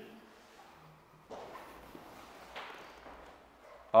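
Several people's feet scuffing and shifting on a wooden floor, with loose cotton uniforms swishing, as a group moves together into a new stance. There are two soft swishing scuffs, about a second and a quarter apart.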